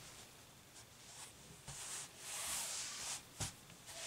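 Cotton Ankara print fabric rustling as hands fold and smooth it flat on a cloth-covered table: soft swishes in the second half, with one small tap shortly before the end.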